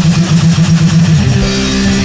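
Rock band playing live: distorted electric guitar and bass guitar over drums, with no singing. A little over a second in, the fast pulsing part gives way to a new, more held chord.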